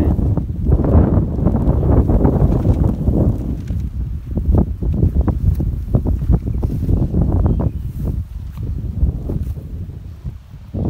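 Wind buffeting the microphone in loud, gusty rumbles, with short crackling rustles mixed in; it eases somewhat near the end.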